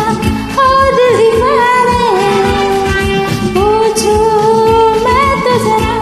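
A woman singing a Hindi song over a karaoke backing track, holding long, drawn-out notes that bend and glide in pitch.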